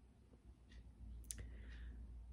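Near silence: quiet room tone in a pause between sentences, with one faint, sharp click a little past the middle.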